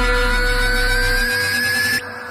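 Film background score: a deep bass hit rings on under a steady held tone while a synth whine rises slowly in pitch. The whole build cuts off suddenly at the end.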